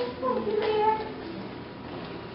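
A high-pitched vocal call that rises and falls in pitch, dying away about a second in.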